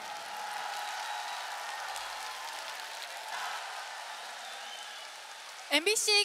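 Large audience applauding, the clapping slowly dying down. A voice starts speaking just before the end.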